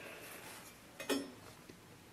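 Quiet room tone with faint handling of a glazed stoneware mug being lifted out of a kiln, and one brief soft knock about a second in.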